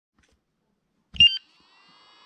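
Spektrum S150 battery charger powering up: a thud and a short cluster of high electronic beeps about a second in, then a faint, steady high whine.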